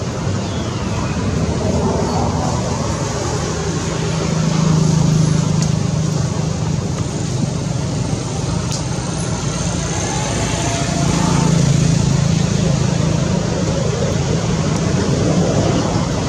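Steady rumble of road traffic that swells twice, as if vehicles are passing.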